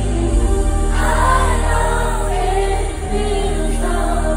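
Female pop singer's voice singing a slow, drawn-out melody into a microphone over sustained low chords, amplified live through an arena sound system.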